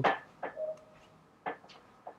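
A man's word trailing off, then a pause of quiet room tone broken by two faint clicks, about half a second and a second and a half in.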